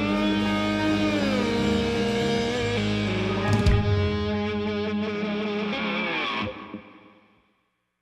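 Rock band's closing chord: distorted electric guitar ringing out, its pitch bending down about a second in, with a single drum hit about halfway through. The music then stops abruptly with a short ring-out near the end.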